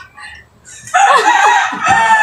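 A single loud, drawn-out pitched call lasting about a second and a half, starting about a second in.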